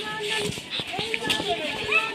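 Children's voices calling out as they play, over a crowd of people talking.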